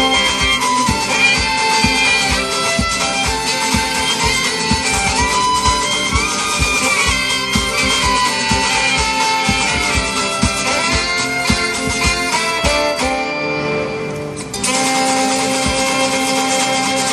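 A live band plays an instrumental passage: a fiddle carries the melody over guitar and a steady drum beat. About thirteen seconds in, the beat drops out for a moment, then the band comes back in on a held chord.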